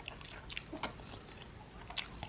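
A person chewing a mouthful of waakye (rice and beans) and fish, with soft wet clicks and smacks of the mouth about four times, the sharpest one near the end.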